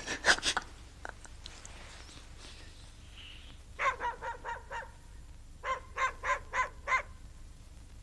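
An animal calling in two quick runs of about five short calls each, the first about four seconds in and the second about a second and a half later.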